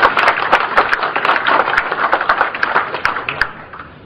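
An audience applauding, a dense patter of hand claps that thins out and dies away near the end.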